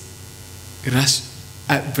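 Steady low electrical hum from the sound system during a pause in a man's talk, with a short spoken syllable about a second in and his speech starting again near the end.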